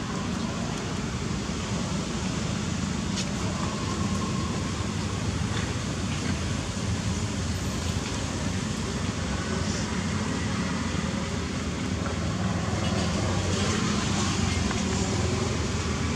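Steady low rumbling background noise with a few faint, brief clicks.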